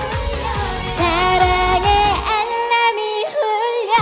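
Upbeat Korean trot-pop song: a woman sings with vibrato over a backing band. About halfway through, the bass and beat drop out and leave the voice and higher instruments, then come back right at the end.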